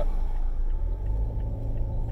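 Steady low rumble of a car heard from inside the cabin: engine and road noise.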